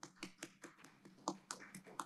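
Faint irregular clicks and taps of a computer keyboard and mouse, several a second.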